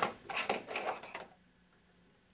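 Papers and small test items being handled on a table: a cluster of short rustles and light knocks over the first second and a half, then quiet room tone.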